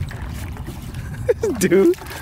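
A plastic bucket being dipped into shallow pond water, water sloshing and splashing in and over its rim, with a low wind rumble on the microphone. A man's voice cuts in near the end.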